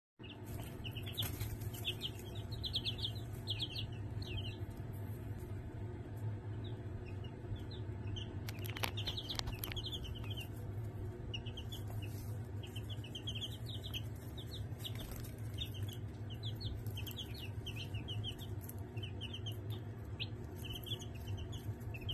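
Five-day-old chicks peeping: short high chirps in quick clusters, on and off throughout, over a steady low hum. A few brief clicks sound in between, around nine seconds in.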